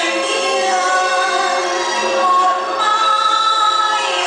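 A woman singing into an amplified microphone, holding long notes.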